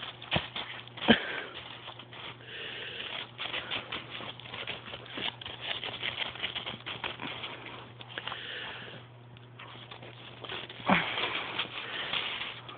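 A dog sniffing at the snow with its nose down, amid the crunching and patter of paws in snow. A few sharper knocks stand out, about half a second and a second in and again near the end.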